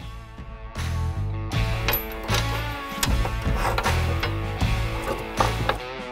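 Background music with a bass line that changes notes about twice a second and a steady beat.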